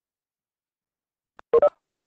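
Two short electronic beeps in quick succession, each made of a few steady tones, from a video-call app's notification chime, just after a faint click near the end.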